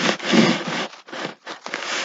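Hands sliding and handling paintbrushes and chipboard craft pieces on a tabletop: rough rubbing and scraping, one long stroke followed by a few shorter ones.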